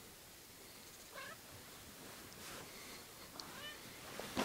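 Domestic cat giving two faint, short meows, one about a second in and another near the end.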